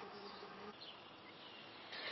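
Faint, steady buzzing of a chorus of Brood X periodical cicadas.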